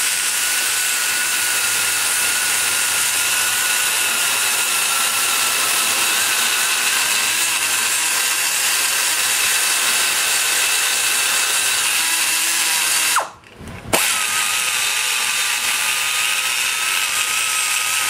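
Die grinder with a burr whining at a steady high pitch as it grinds the cast-iron exhaust port of a Chevy small-block 601 cylinder head. About 13 seconds in it winds down and stops briefly, then starts again and keeps cutting.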